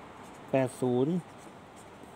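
Ballpoint pen writing on a sheet of paper, a faint scratching under a man's voice, which says two short words about half a second in.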